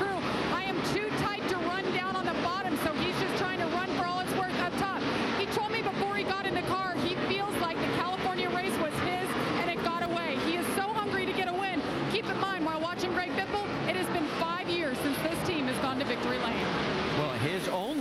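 Broadcast speech throughout: a reporter talking over the steady drone of stock cars running on the track.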